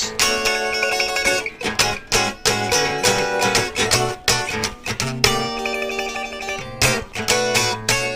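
Telecaster-style electric guitar played with bare fingertips and wrist instead of a pick: chords and notes struck in quick, rhythmic strokes, with several chord changes and a couple of brief breaks.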